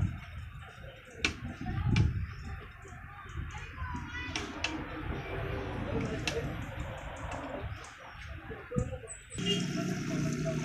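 Toothbrush scrubbing the glass inside an aquarium, with irregular splashing and sloshing of the water and scattered small knocks against the glass.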